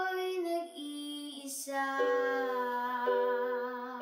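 A young girl singing long, held notes that glide between pitches, with a brief hiss about one and a half seconds in. She accompanies herself on an electronic keyboard, whose chords come in at about two seconds and again near three.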